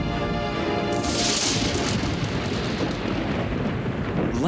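Background music with held notes gives way about a second in to a sudden thunder crack from a close lightning strike, which trails off into a rumble.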